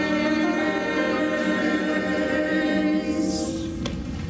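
Church choir of men and women singing, holding a long chord that fades out near the end.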